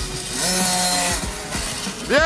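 Small two-stroke engine of a child's 50cc dirt bike revving. Its pitch rises about half a second in, holds, drops back a little after a second, then climbs again near the end.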